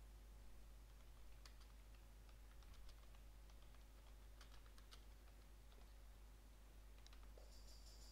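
Faint typing on a computer keyboard, a run of irregular keystrokes over several seconds.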